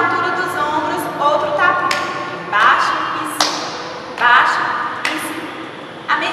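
A woman speaking, broken by three sharp taps, the loudest about three and a half seconds in.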